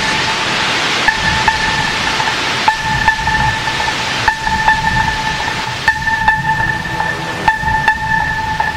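Hardstyle electronic music played live on drum machines and synthesizers. A high synth note re-enters about every second and a half under a loud hiss-like noise sweep that fades out over the first few seconds, with scattered percussive hits.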